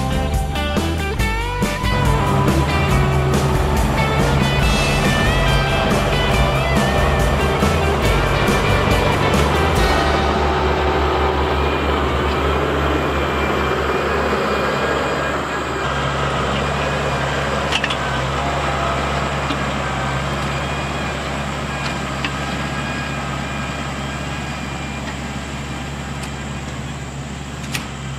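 Background music with a steady beat for about the first ten seconds, then the LS XR4040 tractor's diesel engine running steadily as it works the box blade.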